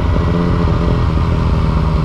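Yamaha FZ-09's three-cylinder engine running at a steady note while the motorcycle rides along, with wind noise over it.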